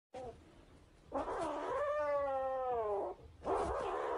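Grey cat yowling: one long drawn-out cry whose pitch rises and then slowly falls, followed near the end by a second, shorter cry.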